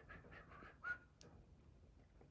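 Near silence: a person's faint breaths close to a microphone, with one small mouth sound about a second in.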